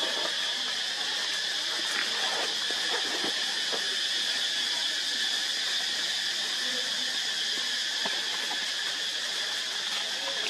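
Steady, high-pitched insect chorus, a continuous buzzing drone that does not change, with a few faint rustles of dry leaves underneath.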